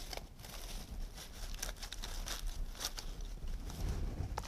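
Faint rustling and light clicks of flower stems and leaves being handled and slid into a vase arrangement.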